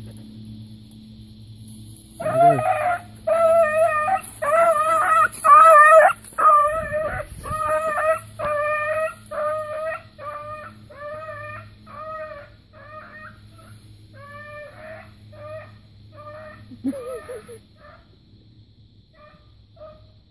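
Young beagle hound baying on a rabbit's scent trail: a run of about two yelping calls a second that begins a couple of seconds in and grows fainter, trailing off near the end. It is the puppy opening up, giving voice on a trail.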